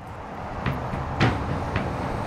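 Kolberg-Pioneer FT4250 track-mounted horizontal shaft impact crusher running, a steady low rumble broken by sharp knocks at irregular intervals, three of them in two seconds, as it crushes recycled concrete pavement.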